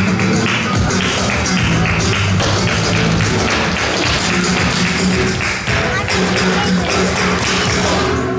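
Live flamenco music: Spanish guitar and percussion with a fast, dense tapping of the dancers' heel-and-toe footwork (zapateado).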